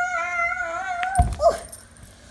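A long, held, high-pitched cry, wavering slightly, that breaks off with a thump about a second in, followed by a short gliding yelp.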